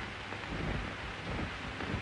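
Steady hiss and crackle of an early sound film's soundtrack from 1929, with a few faint low bumps.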